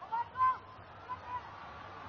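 Stadium crowd noise from a televised football match, with a few short honking horn toots from fans: two near the start and two fainter ones about a second in.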